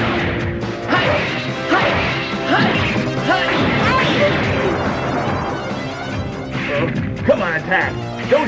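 Cartoon impact sound effects: a series of crashes and thwacks as a giant robot slams into the ground and debris flies, over background music with held notes.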